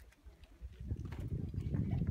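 Wind buffeting the camera microphone: a gusty low rumble that grows stronger in the second half.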